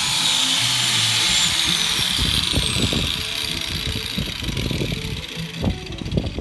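Handheld angle grinder off the work and spinning down: its high whine falls in pitch and fades about two seconds in. Irregular low thumps and rustles of handling follow.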